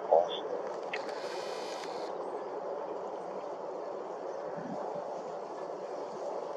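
Steady low background rumble, with a brief scrap of a person's voice at the very start and a short hiss about a second in.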